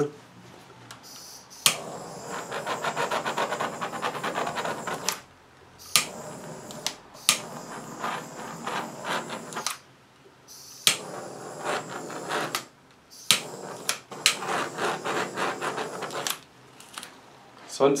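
Heat gun blowing hot air over wet acrylic paint in about four short bursts of a few seconds each, each switched on with a click and cut off again, a hissy airflow with a fine rattle. The paint is heated only lightly to bring up cells.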